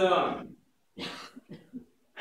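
A man's speech through a microphone breaks off about half a second in, followed by two short coughs as he clears his throat.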